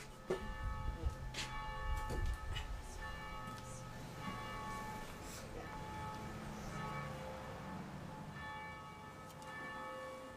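Bells ringing: irregular strikes, about one a second, with several clear tones that hang on between them. Low thumps and rumble sit under them in the first two seconds or so.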